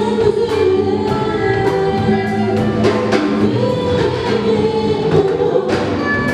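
Live gospel worship band: several voices singing together over keyboard and a drum kit, with regular drum and cymbal hits keeping the beat.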